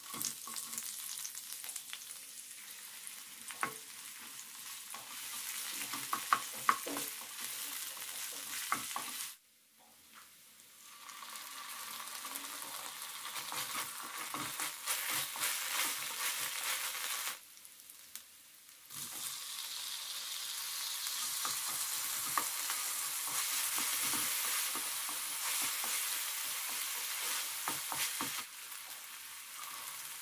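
Sliced onions and chopped vegetables sizzling in hot oil in a frying pan, with sharp clicks and scrapes of a wooden spatula against the pan as they are stirred. The sizzle breaks off briefly twice.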